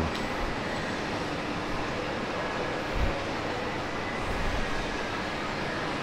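Steady, even background noise of a large indoor shopping mall, with one soft low thump about three seconds in.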